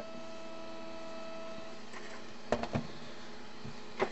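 A steady electrical hum with a few thin tones that dies away about two seconds in, then a brief clatter of light knocks as a handheld RC transmitter is set down on the workbench.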